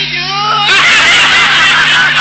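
One voice, then from under a second in many people laughing and shouting together.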